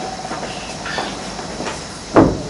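Steady background hiss and room noise of an amplified hall recording, with a faint steady hum and a couple of faint ticks.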